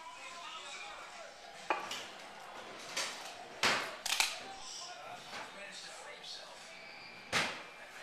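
Several short, sharp knocks and clatters of household objects being handled, spread through a few seconds, the loudest a close pair about four seconds in.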